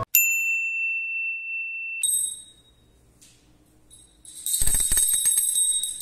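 Bell sound effects: a clear, steady ding held for about two seconds, then a higher bell strike that dies away into near silence. About four seconds in the bells ring again, joined by a rapid clicking rattle.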